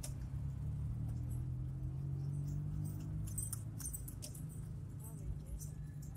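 Car engine and road noise heard inside the cabin of a KIA Timor sedan on the move: a steady low drone that rises a little in pitch over the first few seconds. Light clicking rattles come in around the middle.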